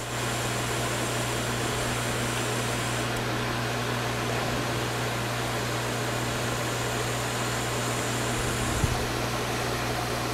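Metal lathe running steadily with a low motor hum, while 220-grit abrasive paper is held against the end face of a spinning stainless steel part, giving a steady hiss. A brief knock comes near the end.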